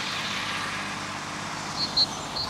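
Steady outdoor background hiss with a faint low hum, and a few short high chirps near the end.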